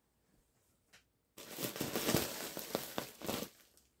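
Plastic bag of polyester fiberfill crinkling and rustling as a handful of stuffing is pulled out of it. It starts about a third of the way in after a near-silent stretch and lasts about two seconds, full of small crackles.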